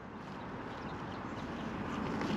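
Faint rustling and crackling that grows slightly louder: hands working through radish leaves and pulling radishes out of the soil.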